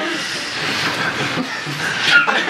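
Audience laughing, a steady crowd noise with no single voice standing out.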